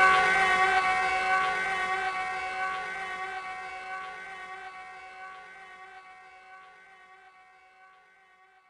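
A held distorted electric-guitar chord of several steady tones ringing out at the end of a punk song. It fades away evenly over about eight seconds until it is barely audible.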